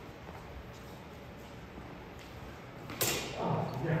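Steel sidesword blades clash once, sharply, about three seconds in, after a few seconds of quiet hall room tone; a short vocal reaction follows right after.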